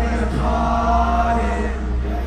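Live concert music from an arena PA: heavy steady bass under voices singing, with one long held sung note in the middle.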